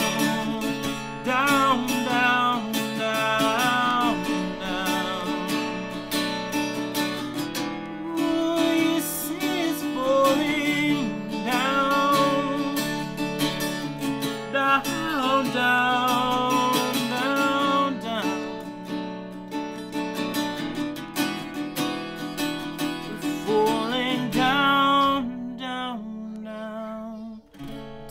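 A man singing, with sustained, bending vocal lines, over a strummed acoustic guitar. The playing quietens near the end.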